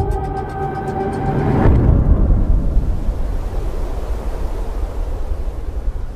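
Held musical notes fade out, and about two seconds in a loud, steady, low rushing rumble swells in and carries on, a scene-transition sound effect.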